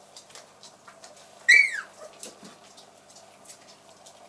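A Sheltie puppy gives one short, high-pitched yelp that rises then falls, about a second and a half in, over light clicking of paws on a wooden floor.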